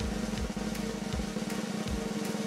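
A snare drum roll: a fast, even run of drum strikes over a steady low tone, a suspense cue for a card reveal.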